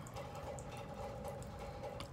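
Pause between speech: faint room tone with a low, steady background hum.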